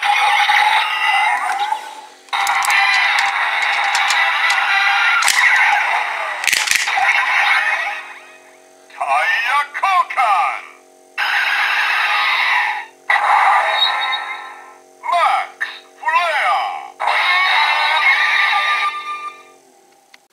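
Kamen Rider Drive DX Drive Driver belt toy playing its electronic sound effects through its small speaker, with no bass. For about eight seconds after the ignition key is turned there is a continuous music-and-effects sequence. After that come several short bursts of electronic voice calls and jingles as the Max Flare shift car is worked in the Shift Brace, announcing the tire change.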